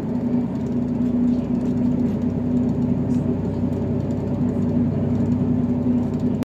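Diesel railcar running at speed, heard from inside the passenger cabin: a steady engine drone with a strong low hum over the rumble of the wheels on the track.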